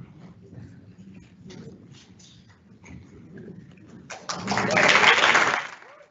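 A short, loud burst of applause that starts about four seconds in and cuts off abruptly after less than two seconds. Before it, only faint scattered knocks and murmur.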